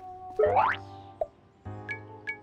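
A quick rising cartoon sound effect about half a second in, gliding from low to high, over light background music. The music drops out briefly after it and picks up again near the end.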